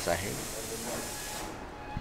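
A man's spoken word ends at the start, then a steady hiss of background noise that fades away about one and a half seconds in.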